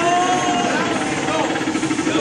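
Arcade boxing punch machine running a fast, even electronic rattle while its score tallies up after a punch, over arcade din and voices.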